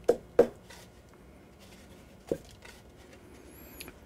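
A cane banneton basket, held upside down, tapped to knock out excess flour: two quick knocks close together at the start and a lighter one a little past two seconds in.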